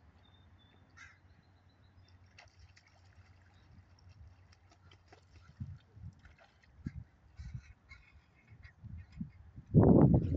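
Canada goose family calling on the water: scattered short, high peeps through most of the stretch, a few low calls in the second half, and a loud rough call just before the end.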